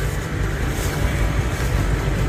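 Steady outdoor background noise: a low rumble under a faint even hiss.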